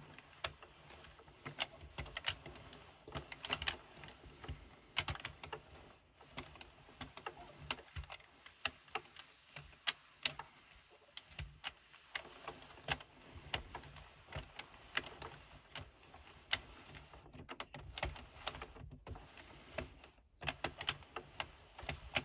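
Plastic needles of an Addi circular knitting machine clicking irregularly, a few times a second, as the handle is turned slowly, needle by needle, during a cast-on.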